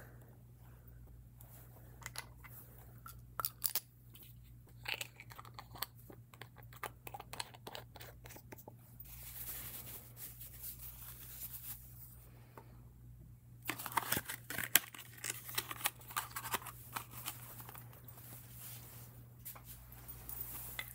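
Small clicks and taps from a fountain pen and glass ink bottle being handled while the pen is filled with ink. About nine seconds in there is a soft rustle as a paper towel is rubbed over the nib to wipe off ink. Near the end comes a busier run of clicks and rustling as the pen and bottle are put away.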